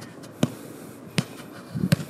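Three sharp, evenly spaced knocks about three-quarters of a second apart, over a low outdoor background.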